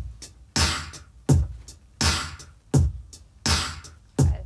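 Vocal percussion: choir members beatboxing a drum beat with their mouths. A deep kick and a hissing snare alternate about every 0.7 s in a steady loop, with faint clicking hi-hat sounds between.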